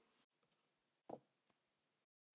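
Near silence with two faint clicks about half a second apart: keystrokes on a computer keyboard.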